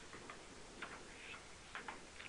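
Faint room tone with a few soft, short clicks scattered through it.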